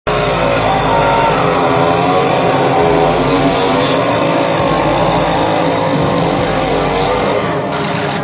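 Loud, distorted live concert sound of an industrial band taking the stage: a dense mix of many wavering pitches over a steady wash of noise, changing abruptly near the end.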